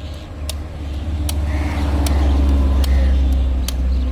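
A motor vehicle passing on the road, its low engine rumble swelling to a peak about halfway through and easing off near the end. Sharp clicks recur about once every second throughout.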